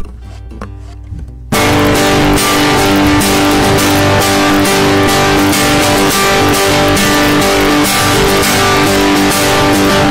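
Acoustic guitar: one strummed chord rings at the start, then about a second and a half in a steady, rhythmic strummed chord pattern begins, loud, the instrumental opening of a worship song.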